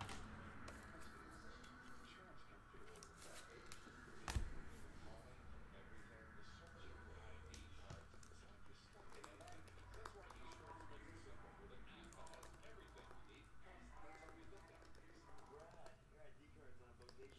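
Near silence with faint scattered clicks and taps of handling, and one sharp knock about four seconds in.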